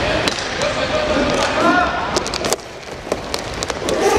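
Inline hockey game in an arena: spectators and players shouting over sharp clacks of sticks and the plastic puck on the court and boards. A quick run of clacks comes about two and a half seconds in, then the crowd noise drops away abruptly and only a few clicks are left.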